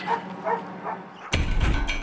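A German shepherd police dog gives a few short barks. About a second and a half in, background music with a heavy low beat comes in suddenly and is louder than the dog.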